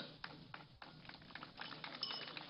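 Faint background noise with a few light taps.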